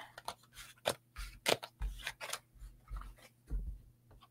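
Tarot cards being gathered up from the table by hand: quick, irregular slides, flicks and snaps of card stock against card and tabletop, with a few soft taps.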